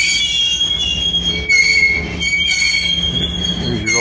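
Freight cars rolling past close by, their steel wheels squealing against the rails in several high, steady tones over the low rumble of the train. The squeal is loudest about a second and a half in.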